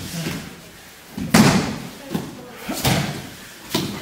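Aikido practitioners hitting the mats as partners are thrown down and pinned, about four sharp slaps and thuds. The loudest comes about a second and a half in, with others following.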